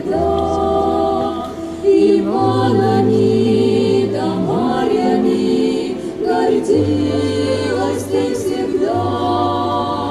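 Three young women's voices singing in harmony into microphones, held notes that slide together into new chords every few seconds, over low held bass notes.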